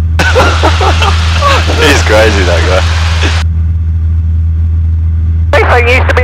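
Steady low drone of a Robin 2160's four-cylinder Lycoming engine and propeller inside the cockpit. For about the first three seconds a hissy radio transmission with a voice plays over it and cuts off suddenly, leaving only the engine drone.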